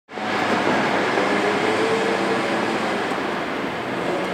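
Busy city street sound: a steady, dense wash of traffic noise with a faint low hum running through it, cutting in abruptly at the start.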